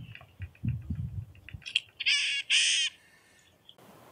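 White-breasted nuthatch being handled for banding, giving two loud, harsh nasal calls about two seconds in, after a run of faint short notes.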